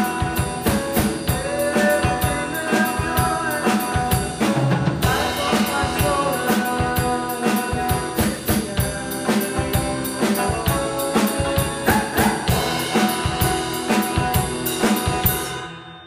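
Rock band playing an instrumental passage: electric guitar over a drum kit with a steady beat of snare, bass drum and cymbal hits. The playing drops away briefly right at the end.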